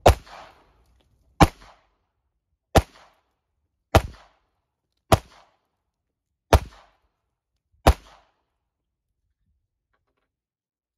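Seven 9mm pistol shots from a Sig Sauer P210 American, fired at a steady pace a little over a second apart, each with a short echo after the crack.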